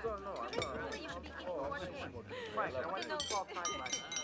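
Background crowd chatter, with a glass struck several times near the end, giving clear ringing clinks: a glass tapped to call for a toast.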